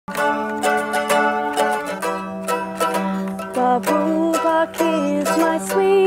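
Bowlback mandolin being strummed: a steady run of picked chords, each stroke clear, over ringing held notes, as an instrumental introduction to a song.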